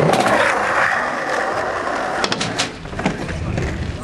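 Small wheels rolling over skatepark ramps and concrete, loudest in the first two seconds, then a few sharp knocks a little past the middle.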